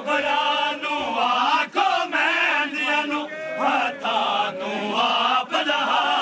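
A group of men chanting a Punjabi nauha, a Muharram lament, together in a continuous sung chant.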